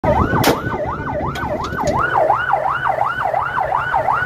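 A patrol boat's electronic siren yelping, its pitch sweeping up and down about three times a second, over a steady low engine rumble. A single sharp crack sounds about half a second in.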